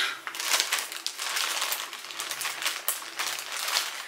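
Black plastic poly mailer bag crinkling and rustling in an irregular crackle as it is handled and cut open with scissors.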